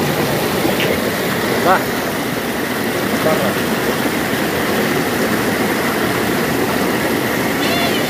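Water of a shallow stream spilling over a rock ledge in a small waterfall, a steady rush. A few short, high calls break through it now and then.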